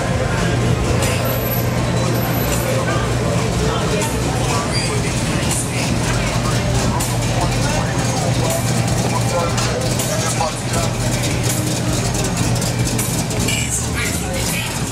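Slow-moving cruising car traffic on a crowded street, engines running, mixed with indistinct crowd voices and a steady low hum.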